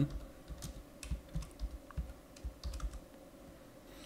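Typing on a computer keyboard: a run of quiet, irregular keystrokes that stops about three seconds in.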